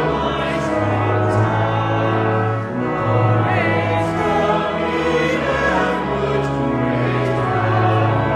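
Church choir singing a recessional hymn over organ accompaniment, with long held low organ notes underneath.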